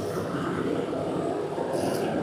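Engines of factory stock dirt-track race cars running at speed as a pack goes past, a steady dense drone.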